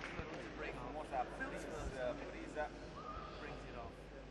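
Faint sports-hall ambience with scattered distant voices.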